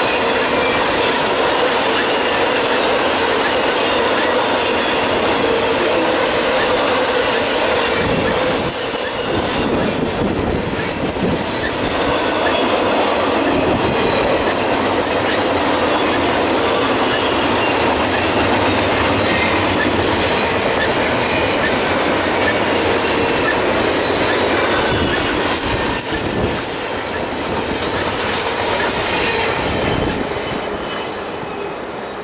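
Union Pacific double-stack container train's cars rolling by: a steady rumble and clatter of wheels on rail, with faint high wheel squeal now and then. It drops off somewhat about 26 seconds in, as the last cars pass.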